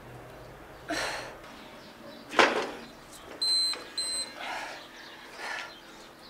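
A woman breathing out hard with each decline push-up, about one breath every second, the loudest about two and a half seconds in. Around the middle an interval timer gives two short high beeps.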